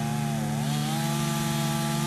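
Chainsaw running steadily as it cuts into a tree trunk. Its pitch dips briefly about half a second in as the chain bites, then holds steady.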